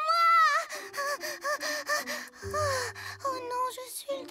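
Cartoon chick characters' wordless vocal sounds: a loud drawn-out exclamation at the start, then a string of short chirp-like syllables and a falling sigh, with a low steady hum underneath in the middle.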